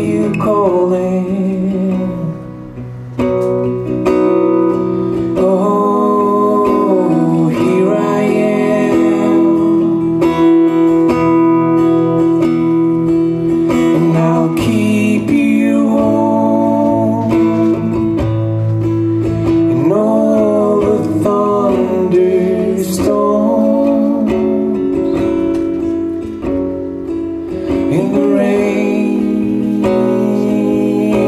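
Live acoustic song: a steel-string acoustic guitar played as accompaniment, with long sung vocal lines held and bending over it.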